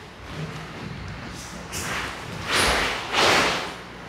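Karate practitioners moving into the opening of Sanchin kata on a wooden dojo floor: three short, loud swishes of movement in quick succession, from about halfway through, with a soft thump among them.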